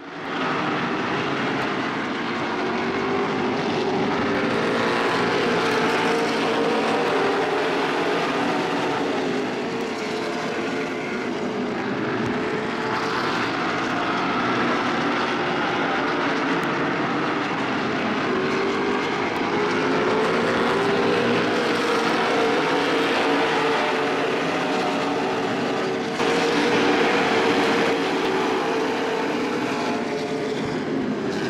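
Super late model stock cars racing on an oval, their V8 engines running hard in a pack, the pitch rising and falling as they pass. The sound fades in at the start.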